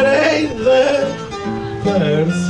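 Plucked acoustic guitars playing the instrumental accompaniment of a Portuguese cantoria, a steady run of melody notes between the sung verses.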